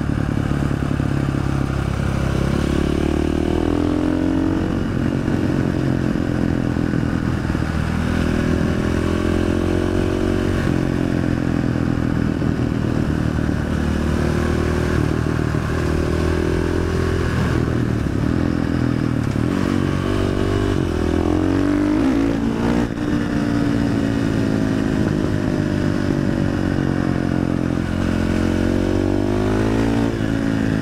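KTM 500 EXC single-cylinder four-stroke dirt bike running an FMF exhaust with the dB killer removed, ridden hard. The engine pitch rises and falls again and again as the throttle opens and closes, with the exhaust echoing off a rock wall beside the road.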